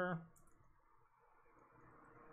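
A few faint clicks from working at a computer, about half a second in, then quiet room tone.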